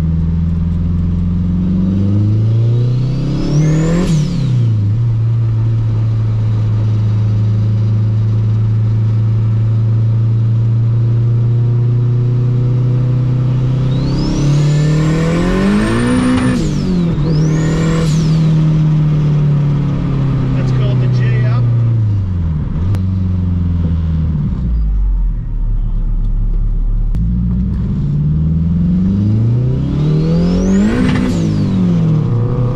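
K-swapped Honda Civic engine heard from inside the cabin, accelerating hard. The revs climb to a high-pitched whine and drop sharply at each gear change, about 4 seconds in and twice more in quick succession past the middle. Between the climbs the engine holds steady, then eases off and starts building again near the end.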